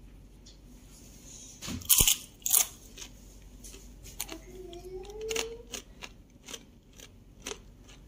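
Crunching of a dry air-fried keropok cracker being bitten and chewed, with the loudest bite about two seconds in and smaller crackles after it. A brief hum of a voice comes in the middle.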